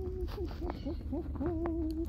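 A woman's wordless hooting "ooo" calls: one held note, a few short up-and-down hoots, then another long, slightly wavering "ooo" near the end.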